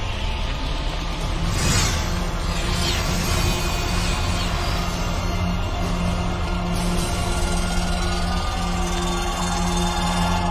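Dark film score music with sustained low notes over a dense rumble. Two sweeping whooshes come about two and three seconds in.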